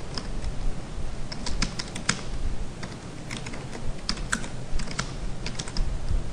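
Typing on a computer keyboard: irregular keystroke clicks, some single and some in quick runs.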